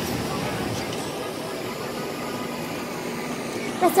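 Steady background noise of a busy indoor room with indistinct voices, in a pause between the song's sung lines.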